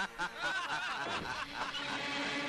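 A man laughing: a few short bursts, then a longer run of laughter.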